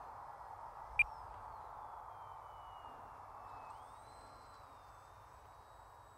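Faint whine of the E-flite Micro Draco's electric motor and propeller in flight far off, sliding down in pitch and then rising again a little past halfway, over a soft hiss. A single sharp click comes about a second in.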